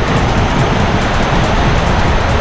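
Inflatable water-slide raft rushing down an enclosed tube: a loud, even rush of water with a heavy low rumble from the raft on the slide.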